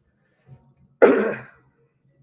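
A man clears his throat once: a sudden burst about a second in that dies away within half a second.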